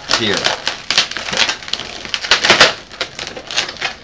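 Latex modelling balloons squeaking and rubbing against each other and the hands as they are twisted and joined, in a quick, irregular run of squeaks, loudest a little past halfway.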